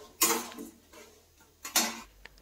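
Steel spatula knocking against a stainless steel kadai while stirring dal and cashews in oil: two metallic clinks about a second and a half apart, each ringing briefly.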